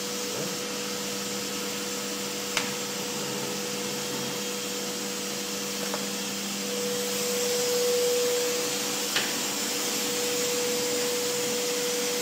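Foliant laminating machine running: a steady motor drone with a constant whine, growing somewhat louder about seven seconds in. Three light clicks come along the way.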